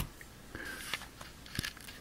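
A few faint, short clicks and taps of small parts being handled by hand, scattered over the two seconds, the clearest one near the end.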